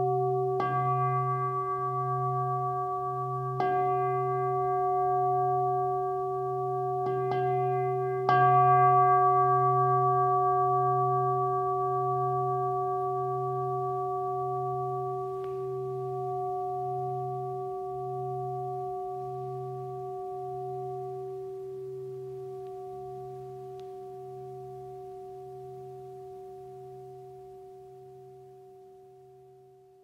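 A singing bowl, a bowl-shaped Buddhist bell, struck four times in the first nine seconds, its low hum wavering, then left to ring on and fade away, dying out at the end.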